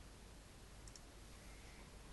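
Near silence: faint room tone, with one faint double click of a computer mouse a little under a second in.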